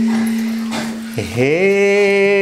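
A steady held tone for the first second, then a male voice sliding up from low into a long held sung note with a rich, bright tone: the opening of a dohori folk-song verse.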